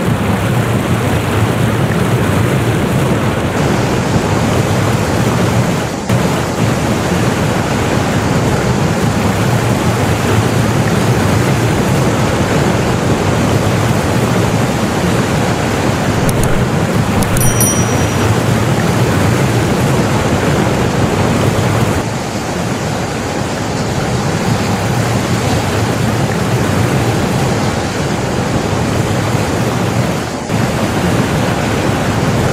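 Loud, steady rush of muddy floodwater and heavy rain, a dense noise without a break that changes abruptly a few times.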